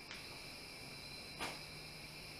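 Faint, steady chorus of night insects such as crickets, a continuous high-pitched trill, with a brief soft scuff about one and a half seconds in.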